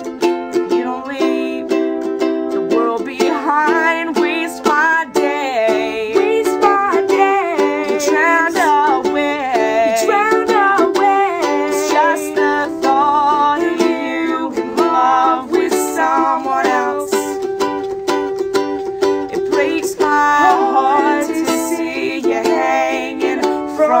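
Ukulele strummed in a steady rhythm, with a woman's voice carrying a wavering melody over parts of it.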